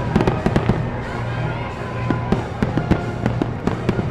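Aerial fireworks bursting: a quick run of sharp bangs and crackles in the first second, then another cluster in the second half, with music playing underneath.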